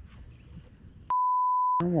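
A single steady, high censor bleep, about two thirds of a second long, starting about a second in. It replaces all other sound while it lasts, bleeping out a word. Before it there is only faint background.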